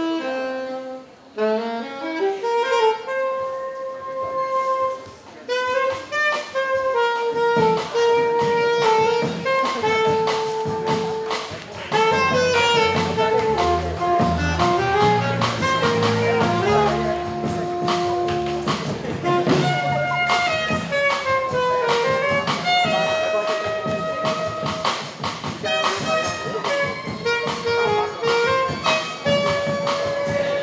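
Alto saxophone playing a jazz melody solo, demonstrating the instrument's voice, the contralto of the sax quartet. About seven seconds in, a low bass line and drums join underneath.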